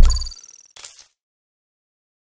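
Logo sting sound effect: a whoosh swelling into a hit, then a bright, high chime ringing out for about half a second, and a short swish just before a second in.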